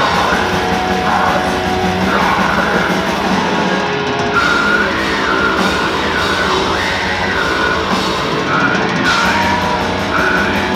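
Live death metal band playing loud and without a break: distorted electric guitars, bass guitar and drum kit, with harsh shouted vocals over them.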